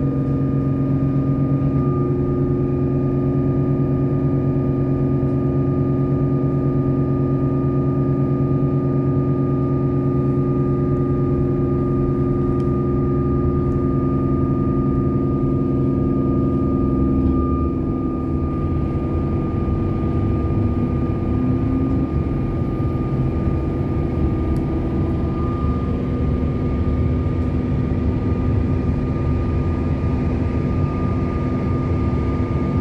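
Inside an electric suburban train carriage: a steady electrical hum with a constant high whine as the train pulls out of the station and gets under way. The hum changes in pitch and drops slightly a little past halfway.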